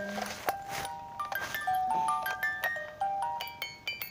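Electronic baby toy playing a simple tinkling tune: short beeping notes that step up and down in pitch, several to the second.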